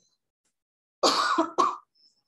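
A person coughing about a second in: a longer cough followed at once by a short second one, heard through a video-call microphone.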